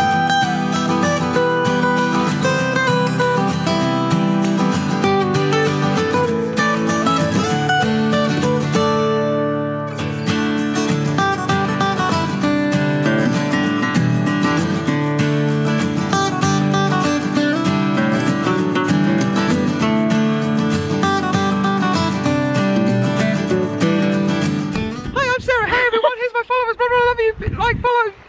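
Background music led by acoustic guitar, dipping briefly about ten seconds in and giving way to a voice in the last second.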